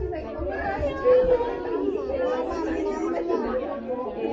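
Chatter of a group of mothers and small children, many voices overlapping with no single speaker standing out.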